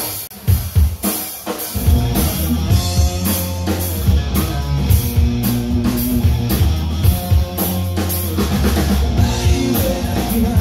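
Live rock band playing an instrumental intro: drum kit alone at first, then bass guitar and electric guitar come in together about two seconds in and the full band plays on with a steady beat.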